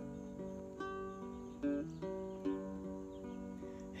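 Small-bodied acoustic guitar playing a short instrumental phrase in a country song, with single notes and chords plucked a few times and left to ring.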